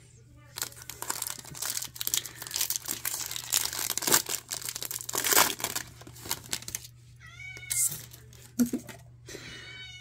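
Foil trading-card pack wrapper crinkling as it is opened and handled. Then a cat meows, about seven seconds in and again just before the end.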